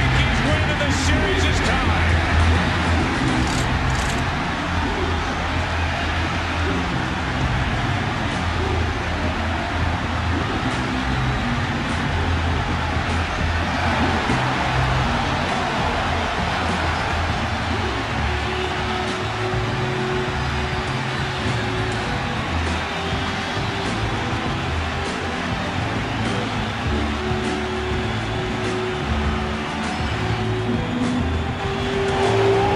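A packed baseball stadium crowd cheering a game-winning extra-inning home run. The cheering is loudest in the first few seconds and then holds steady, with music playing underneath.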